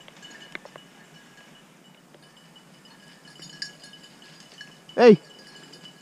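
Faint, intermittent ringing of a small hunting-dog collar bell, jingling on and off as the dog moves. A man shouts once, loudly, about five seconds in.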